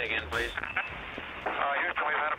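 A thin, radio-like voice clip, as if heard over a radio or phone, louder in the second half. The low end of the background music stops about half a second in.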